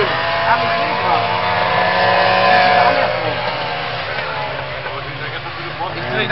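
Trabant stock cars' two-stroke engines running on a dirt track, their pitch rising and falling as the cars accelerate and lift, fading somewhat toward the end.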